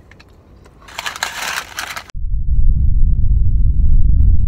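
A crisp crunch about a second in as a chocolate chip cookie is bitten. From about two seconds a sudden loud low rumble, the phone's microphone being jostled by hand, is the loudest sound.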